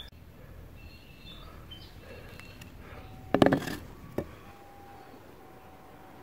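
BMX handlebars being set down on dirt ground: a short clatter about three and a half seconds in, then a single knock about half a second later.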